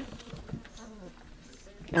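Faint squeaks and a short whine from five-week-old sheepadoodle puppies play-wrestling.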